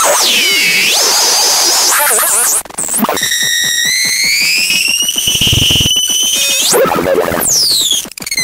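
Circuit-bent speech circuit from a VTech My First Talking Computer making glitchy electronic noise. Warbling, swooping tones cut out briefly, then a held tone from about three seconds in slowly rises in pitch. Near the end it breaks back into swoops and falling glides.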